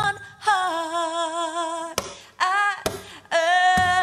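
A woman singing sustained notes: a long held note that slides down at its start and then wavers slightly, followed by two shorter phrases with brief breaks between.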